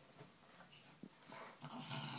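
A small Brussels Griffon dog scrabbling and snuffling in a duvet on a bed. It is faint at first, and the rustling of the bedding and the dog's snuffles grow louder in the second half.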